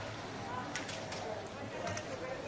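Indistinct background voices, with a few faint clicks.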